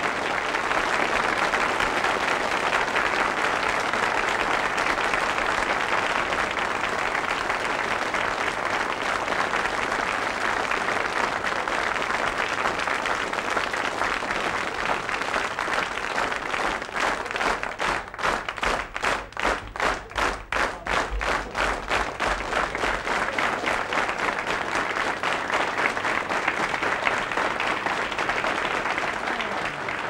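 A studio audience applauding after a song. Past the middle the applause turns for several seconds into rhythmic clapping in unison, then goes back to ordinary applause.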